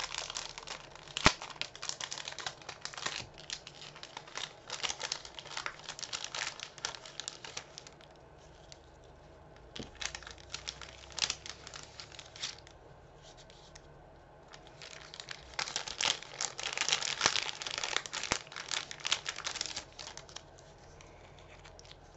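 Thin plastic sticker packet being opened and handled, crinkling and rustling in irregular crackling bursts. The crinkling eases off twice in the middle and is busiest a little after.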